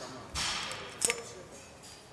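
Cable crossover machine being worked one-armed: a short rush of noise about a third of a second in, then a single sharp click about a second in.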